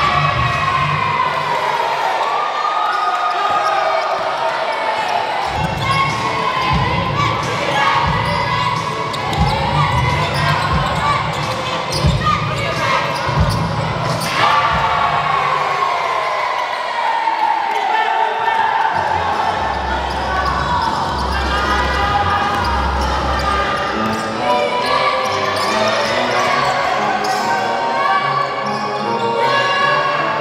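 Basketball game sound on a hardwood court in a large gym: the ball bouncing on the floor again and again, with voices carrying through the echoing hall.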